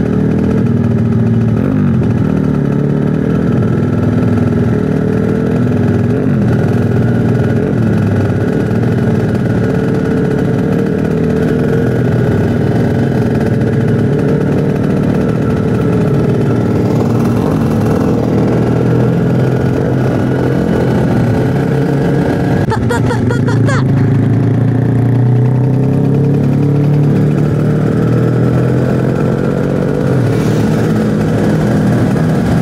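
Kawasaki Ninja RR 150's two-stroke single-cylinder engine running under way, heard from the rider's seat, its revs rising and falling as it rides.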